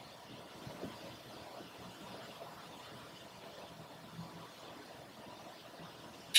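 Quiet room tone: a faint steady hiss with a few soft ticks, around one second in and again past four seconds.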